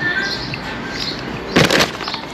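Faint bird chirps over outdoor background noise, then a short, loud burst of noise about one and a half seconds in.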